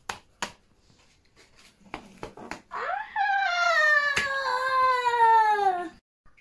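A few light knocks and taps of a wooden rolling pin and dough on a kitchen counter. Then, about halfway through, a loud, long wailing cry of about three seconds that rises sharply and then slowly falls in pitch.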